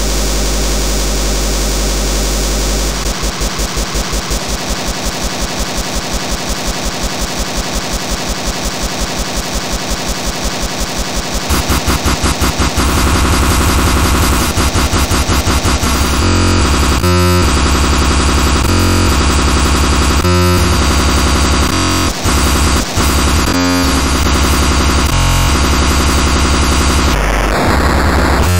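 Speedcore electronic music: a fast, even stream of distorted kick-drum hits starts about three seconds in. Around the middle it grows louder and merges into a harsh, near-continuous buzz, broken by a few short gaps.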